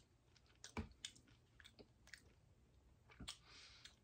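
Faint crunching of a tortilla chip with dip being chewed: a few soft, scattered crunches and mouth clicks over near silence.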